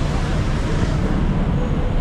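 Steady city traffic noise: a low rumble with a hiss over it.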